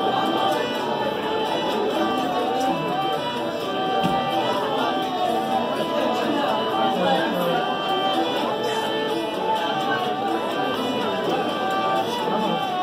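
Irish traditional session ensemble playing a tune together: fiddle and whistle carrying the melody over strummed guitar and tenor banjo, with hurdy gurdy in the mix. Pub chatter sits low underneath.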